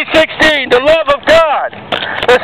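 Loud, distorted shouted speech in a rising-and-falling, declaiming cadence, with the words not clear.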